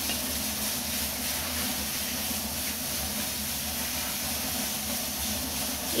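Steady hiss of squid fried rice sizzling and steaming in a hot wok.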